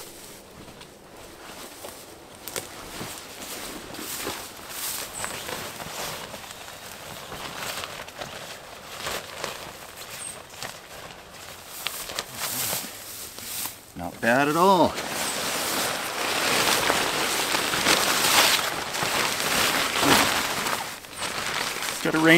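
Synthetic tent fabric rustling and crinkling as a tent cot's rain fly is handled and pulled out. It is faint at first and much louder over the last several seconds. About two-thirds of the way through, a man makes a short gliding vocal sound.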